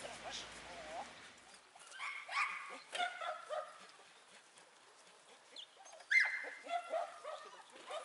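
A small dog and a person making short, high-pitched vocal sounds in two bursts, about two seconds in and about six seconds in, the second the louder.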